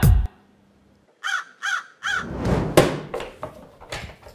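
A crow cawing: a quick run of short caws about a second in, after a brief silence. Then several knocks and thumps follow.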